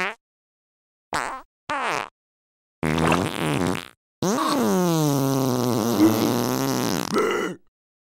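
Cartoon fart sound effect: one long drawn-out fart lasting about three seconds from about four seconds in, after a few shorter sounds.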